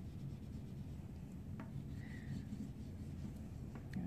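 Oil pastel stick rubbed over paper, blending blue into black: a faint, soft scratching over a low steady room rumble.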